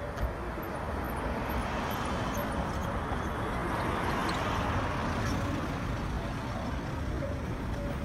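Street traffic noise, with a passing vehicle swelling to its loudest about halfway through and then fading.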